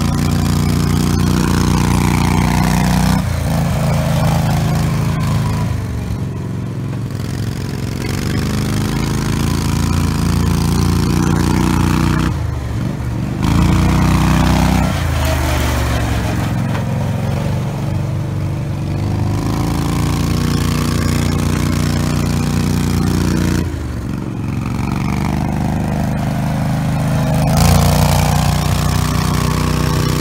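Coot ATV engine running under load as the machine drives over dirt. Its speed falls and climbs back several times with the throttle.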